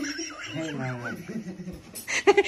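A man chuckling quietly, a short soft laugh with no words.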